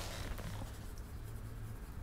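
Soft scratching of a drawing tool on paper as someone sketches at a desk, over a low steady room hum.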